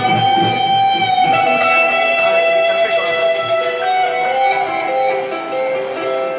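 Electric guitar playing a slow lead melody of long held notes, each sustained about a second or more before stepping to a new pitch.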